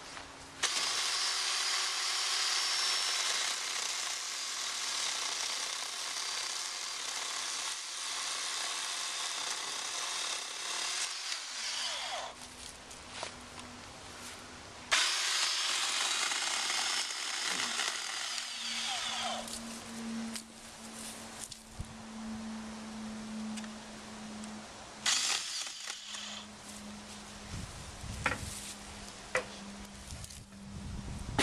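Ryobi 40-volt battery-powered electric chainsaw cutting into a dead log: one long cut of about eleven seconds, a second cut a few seconds later and a short one near the end. A steady hum runs between the cuts.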